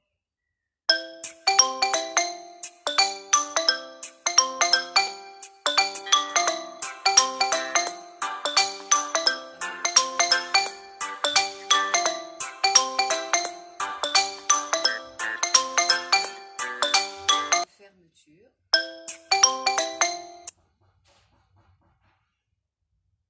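A mobile phone ringtone: a loud, bright melody of quick, short struck notes repeating in a loop, which breaks off about three-quarters of the way through, starts again for a couple of seconds, then cuts off suddenly.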